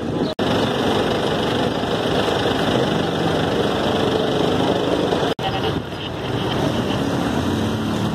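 Steady motor-vehicle engine noise with a faintly wavering pitch. The sound cuts out for an instant twice, once shortly after the start and again about five seconds in.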